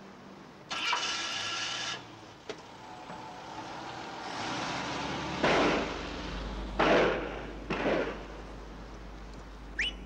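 A car's engine starting and revving as it pulls away, in three loud surges over a steady low rumble, after a short whir about a second in.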